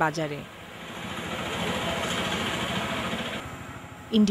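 A steady engine-like hum in the outdoor background swells over a couple of seconds, then drops away near the end. A voice breaks off just as it begins.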